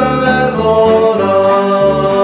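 A hymn sung to acoustic guitar and a plucked upright double bass, the bass moving note to note about every half second under a sustained sung melody.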